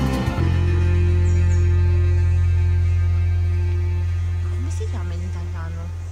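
Background music ending on one long, held low bass note that slowly fades away, with a few short chirps near the end.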